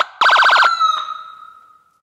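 Electronic horn sound effect: a short blast, then a fast stutter of blasts for about half a second, then one held note that dies away in an echo over the next second.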